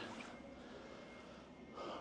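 Quiet room tone with a faint steady high tone, then a short intake of breath near the end.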